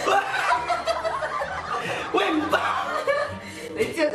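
A woman laughing hard, in fits.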